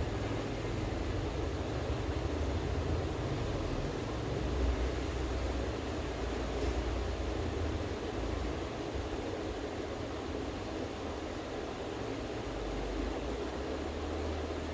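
Steady rushing noise of running ceiling fans filling the room, even throughout with no distinct events.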